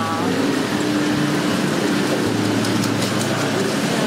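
Street traffic noise with the steady hum of a running vehicle engine.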